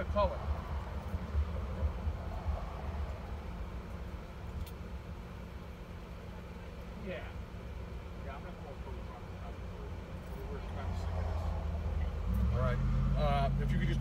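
A car engine rumbles low, heard from inside a car's cabin. About twelve seconds in, a steadier, louder engine hum sets in. Faint voices are heard now and then.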